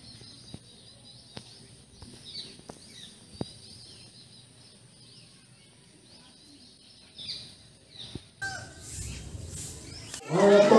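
Small birds chirping in short, repeated high calls over quiet outdoor ambience, with a few faint sharp clicks in the first few seconds. Near the end the background turns louder and noisier.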